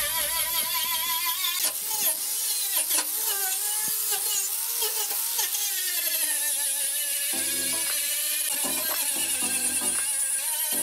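Electric angle grinder whining at high speed as its disc grinds rust off rusty sheet steel, the pitch wavering as the disc is pressed on and moved across the metal.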